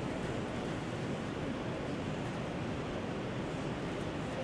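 Steady, even background hiss of room tone, with no speech.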